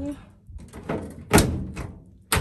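Lid of a top-loading washing machine being handled, giving a few short plastic clunks, the loudest about halfway through.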